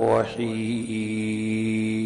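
A man chanting in Arabic: a few quick gliding syllables, then one long steady held note.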